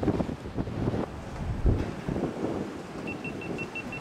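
Wind buffeting the microphone on an open ship deck at sea, coming in uneven gusts. Near the end a quick run of about six short, high beeps.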